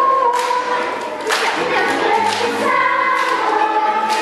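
Children's choir singing: a long held note ends shortly after the start, and a new phrase begins just over a second in.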